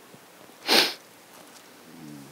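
A person's single quick sniff, a short sharp intake of breath through the nose, close to the microphone a little over half a second in, with a low room background around it.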